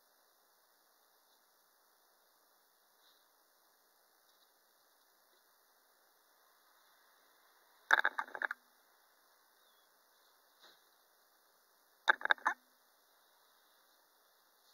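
Quiet room with two short bursts of handling noise, about eight and twelve seconds in, each a quick cluster of rustles lasting about half a second, as an unpainted vinyl reborn doll head is handled over its plastic packaging.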